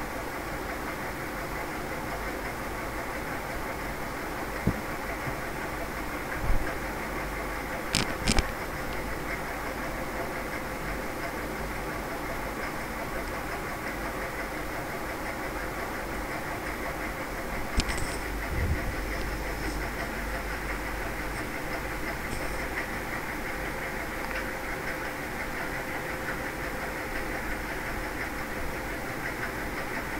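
Steady background hum and noise of the room, with a few brief clicks and knocks scattered through it.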